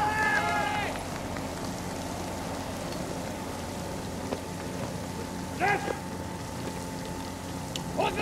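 Portable fire pump engine running steadily under the hiss of water jets from the hose nozzles. A long drawn-out shouted drill call sounds in the first second, and a short shout comes about two-thirds of the way through.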